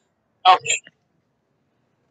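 A single brief vocal sound from a person, under half a second long, about half a second in.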